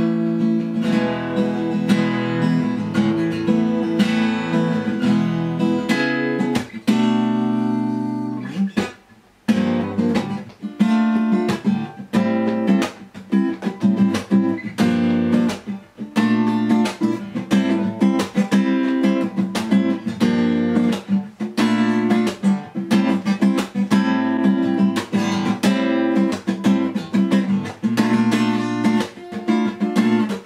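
LÂG Tramontane T66DCE acoustic guitar strummed in chords. About seven seconds in, a chord is left to ring and die away, then the strumming picks up again.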